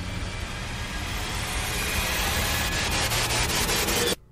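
Ice rink sound during a hockey warm-up: a steady hiss of skates on the ice over a low hum, with a run of light taps in the last second.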